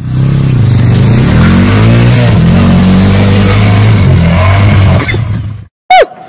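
A loud, low engine running, its pitch wavering up and down slightly, cutting off suddenly near the end.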